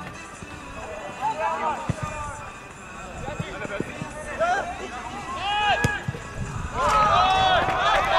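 Players shouting short calls to each other during a youth football match, each call rising and falling in pitch, growing louder near the end, with a few sharp thumps in between.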